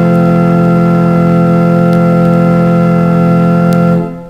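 The Hildebrandt pipe organ in Störmthal holds one full chord steady. The chord is released right at the end and dies away in the church's reverberation. It is heard from a vinyl record, with a couple of faint surface clicks.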